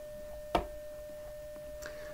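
Steady CW tone of about 600 Hz from the Quisk software radio, heard in full duplex while the Hermes-Lite 2 transmits a CW carrier at full power. A single sharp click comes about half a second in.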